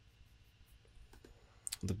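Faint room tone with a few soft clicks from a computer being worked about a second in, then a voice starting to speak just before the end.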